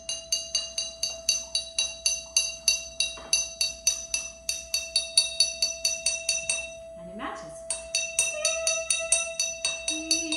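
A steady reference tone on the note E plays throughout, while a drinking glass is tapped rapidly, about four clinks a second, to match its pitch to the tone. The tapping pauses briefly about seven seconds in, then goes on.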